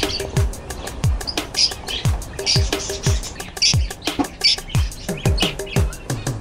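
Electronic dance music with a steady kick drum about twice a second and ticking hi-hats, over the high, irregular chirping of small caged parrots.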